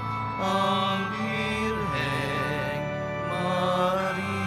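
Entrance hymn of a Catholic Mass: a voice sings long, wavering held notes over sustained keyboard or organ chords.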